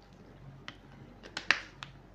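A few sharp clicks and crackles from a plastic water bottle being handled as a drink is finished, the loudest about one and a half seconds in.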